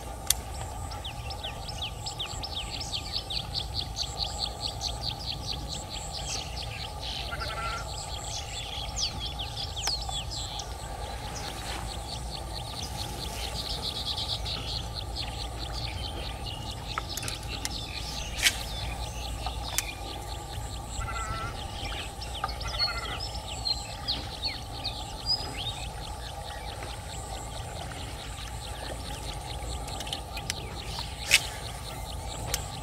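Outdoor background with birds chirping now and then over a steady low rumble. A fast, even run of ticks lasts from the start until about ten seconds in, and a few sharp clicks come around the middle.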